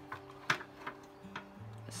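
Soft background music with held low notes, under a few light clicks and taps from the hard-drive bay cover being handled inside a desktop PC case; the sharpest click comes about half a second in.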